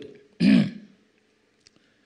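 A man clears his throat once into a handheld microphone, about half a second in.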